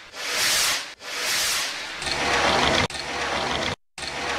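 Swelling whooshing rushes of noise, about one a second, each rising and fading away. About halfway in, a denser, steadier rushing noise takes over and cuts off abruptly near the end.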